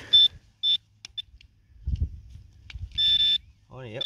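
A handheld metal-detecting pinpointer probe beeping in a dug hole as it finds a buried target, here a lump of lead. It gives short, high, single-pitch beeps: three quick ones in the first second and a longer one near the end. A soft low scuffing of soil comes about halfway through.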